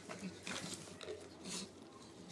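A dog licking and chewing at a small cup held to its mouth, a few soft wet mouth sounds.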